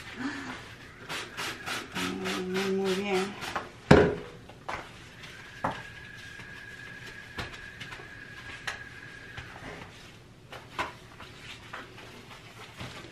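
Bathroom sink and countertop being scrubbed during cleaning: a quick run of short scrubbing strokes, about four a second, then a single sharp knock about four seconds in. Later comes a steady high whine lasting about four seconds, with a few light clicks.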